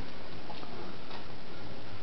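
Steady background hiss with a few faint ticks.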